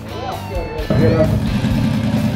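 Music with a wavering vocal line. About a second in it cuts to a drag car's engine running loudly with a low, rapid rumble at the start line.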